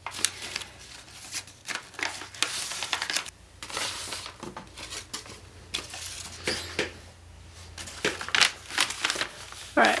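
A sheet of printer paper being handled and folded, rustling and crinkling in short irregular crackles.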